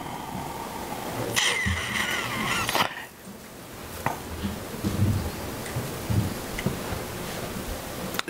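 Meeting-room room tone: a steady hiss with faint off-microphone voices about a second and a half in and a few small knocks and clicks.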